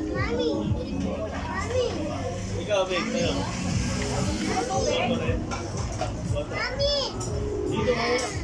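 A toddler's high voice calling out a few times over background music and table chatter.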